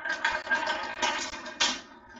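A marble rolling down the plastic spiral track of a toy marble tower, a continuous rolling rattle that dies away near the end.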